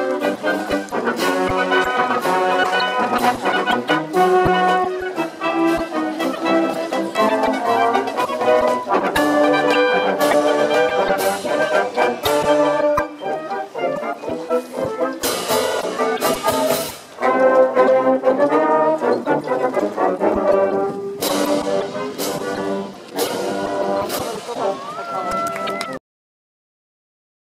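A marching band plays a march: trumpets, trombones, sousaphones and saxophones over drums and cymbals. The playing stops abruptly at the end.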